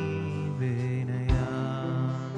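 Live worship music: sustained electric guitar and pad tones, with one drum hit about 1.3 s in.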